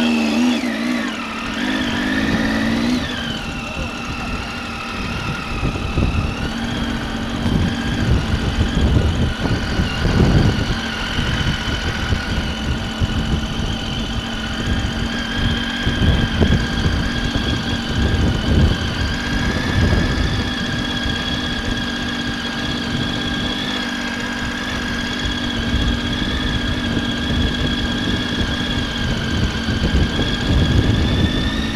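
Motorcycle engine pulling away, its pitch wavering for the first few seconds, then running steadily at low road speed. An uneven, gusty rumble of wind buffets the helmet-mounted microphone.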